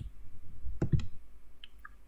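A few clicks from a computer keyboard and mouse as code is selected and copied. Two sharper clicks come about a second in, a fifth of a second apart, followed by two fainter ticks.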